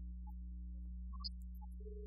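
A small group of young girls singing a Carnatic song together, faint and thin, with held notes, over a steady low hum.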